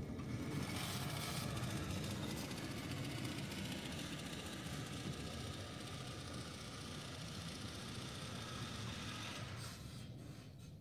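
Swardman Electra battery-electric reel mower running as it is pushed across the lawn, its spinning reel cutting grass with a steady whirr and a faint motor whine, slowly fading as it moves away.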